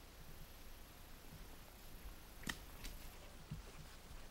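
Quiet outdoor background with one sharp click about halfway through, followed by two fainter ticks.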